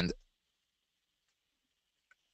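A man's voice trailing off at the start, then near silence with only a faint, steady high hiss.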